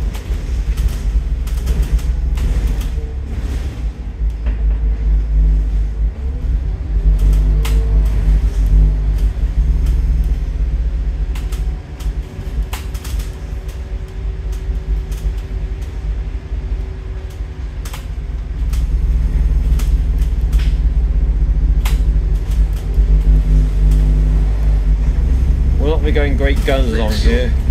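Scania N230UD double-decker bus's five-cylinder diesel and drivetrain heard from the upper deck: a steady low rumble with an engine note that shifts as the bus drives. It drops back for several seconds in the middle and then builds up louder again, with scattered sharp clicks and rattles.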